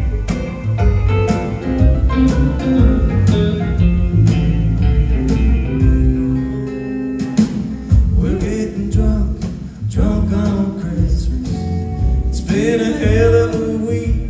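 Live band playing a country-style Christmas song, guitar prominent over a steady drum beat.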